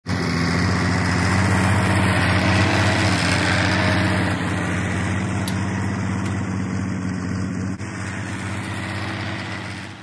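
Tractor engine running steadily, heard close from the tractor while it pulls an implement. The sound cuts off suddenly at the very end.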